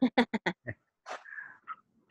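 A short burst of laughter: five or six quick pulses in the first second, then trailing off more softly, heard over a video call.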